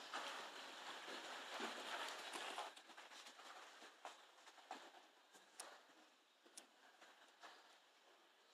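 Horse's hooves beating in the soft sand footing of an indoor arena at a canter, faint and dull, loudest in the first few seconds as the horse passes close, then only a few scattered faint hoof ticks as it moves away.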